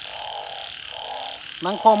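Narrow-mouthed frogs (Isan 'ueng') calling in a chorus: a buzzy call repeated about once a second, with a steady high drone behind it.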